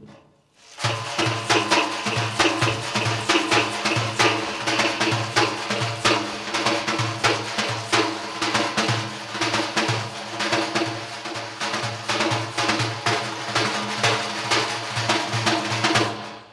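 Daf, the large Kurdish frame drum, played in a fast, driving rhythm of deep strokes and sharp slaps, starting about a second in.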